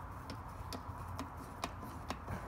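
Intake-hose clamp being unscrewed with a screwdriver, clicking about twice a second as the screw turns.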